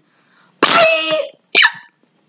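Two non-word vocal sounds. The first is a rough, pitched call about two-thirds of a second long, and a brief second call follows about a second and a half in, falling in pitch.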